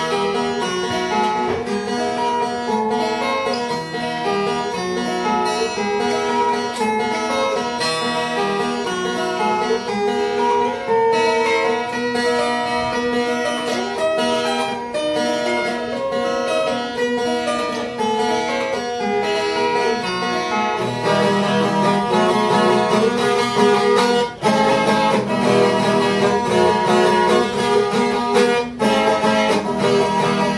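Solo viola caipira, the Brazilian ten-string folk guitar, played as an instrumental: a picked melody over bass notes. About two-thirds of the way through it turns to fuller, louder playing.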